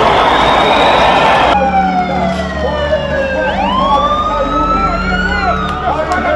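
Street and crowd noise of a mass of runners, cut off about a second and a half in by a siren wailing, its pitch sliding down and then up again over a steady low hum.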